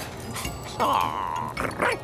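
A cartoon dog's voiced vocalising: a held, slightly wavering high note about a second in, then a couple of quick rising yelps near the end, over soft background music.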